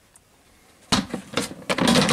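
Black plastic trash can lid being put on and slid into place: a quick run of scrapes and knocks starting about a second in, after a quiet first second.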